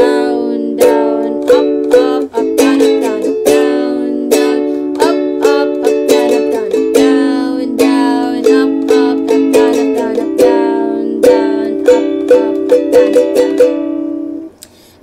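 A ukulele is strummed in a down-down-up-up-up-down-up-down-up pattern, playing the chord progression Bm7, A, D, A, Em7. The chord changes every three to four seconds.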